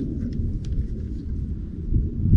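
Wind buffeting the microphone as a steady low rumble, with a few faint clicks in the first second as a lip-grip fish scale is clipped onto a bass's jaw.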